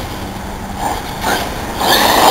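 Cen Matrix RC truggy on a brushless electric conversion, crawling along the asphalt with a faint steady motor whine. Near the end its motor and tyres get louder as it speeds up.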